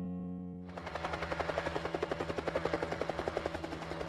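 A held music chord fades out, and about a second in a helicopter's rotor chop fades in: a rapid, even beat of blade slaps.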